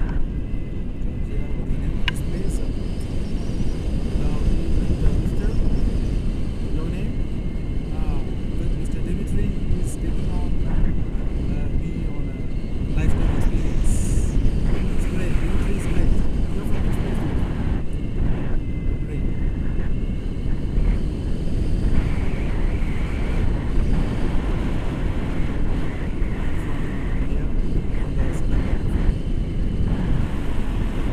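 Wind rushing over the camera microphone as a tandem paraglider flies: a steady, loud, low-pitched buffeting.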